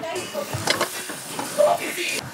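Food sizzling as it fries in a pan on a gas stove: a steady high hiss, with faint voices in the background.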